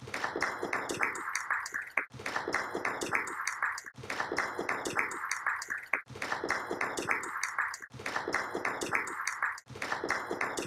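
An audience clapping, a dense run of many hand claps. It repeats in near-identical stretches of about two seconds, each broken off by a brief gap.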